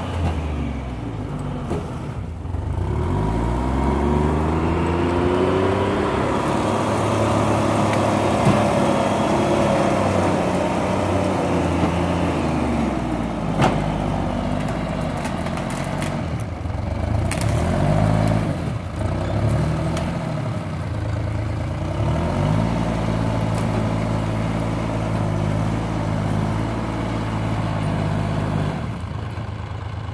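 Timberjack 225 cable skidder's diesel engine revving up and falling back again and again as the machine moves and turns. A few sharp knocks are heard partway through.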